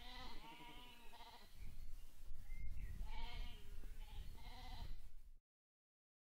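Sheep bleating, several wavering calls overlapping: a burst in the first second or so, then more calls between about three and five seconds in. The sound cuts off abruptly shortly before the end.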